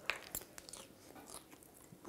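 A man chewing a mouthful of food, faint, with a few small mouth clicks.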